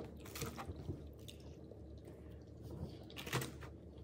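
A fork clicking and scraping in a black plastic food tray, with a few sharp clicks over a low steady room hum; the clearest click comes a little after three seconds in.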